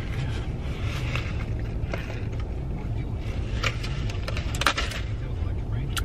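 A car running, heard from inside the cabin as a steady low rumble, with a couple of short clicks midway.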